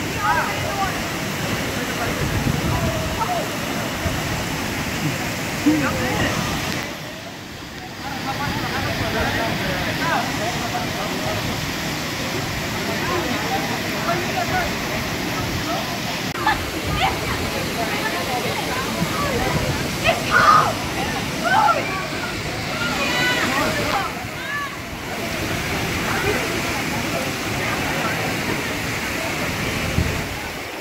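Steady rush of a waterfall pouring into a river pool, with many people's voices chattering and calling over it. The rushing dips briefly twice.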